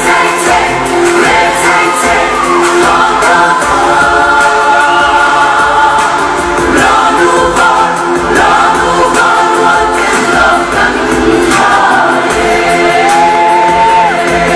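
Music for a Mizo dance: a group of voices singing together in chorus, with a steady beat underneath.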